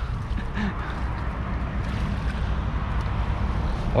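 Steady sloshing and splashing of shallow water as a seine net is dragged through a muddy pool, with wind rumbling on the microphone.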